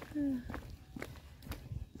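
Footsteps on an asphalt road while walking downhill, about two steps a second, with a short hummed voice sound at the start.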